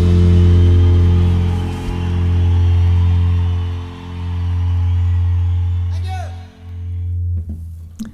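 Music: a five-string fanned-fret electric bass with a band track, playing long low notes about two seconds each as the song closes. It stops about seven and a half seconds in.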